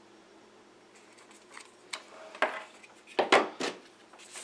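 Handling noise from a small plastic 18650 battery charger and its USB cable being unplugged and set down on a wooden table. A few light clicks are followed by louder clacks about halfway through and a cluster of sharp knocks near the end.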